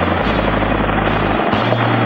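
Helicopter running close by, a loud, steady rush of rotor and engine noise with no let-up.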